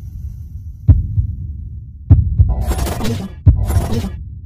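Intro sound effects: a low rumbling drone with deep, heartbeat-like thuds about every second and a half, and two short bursts of hiss in the second half.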